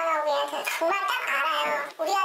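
Speech: a person talking in a high, pitch-shifted voice, altered to disguise an anonymous speaker.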